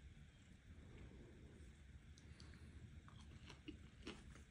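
Faint chewing of a bite of popcorn chicken, with a few soft clicks from the mouth, over near-silent room tone.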